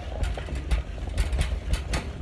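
Handling noise from a handheld phone being carried while walking: irregular rustles and knocks over a low rumble.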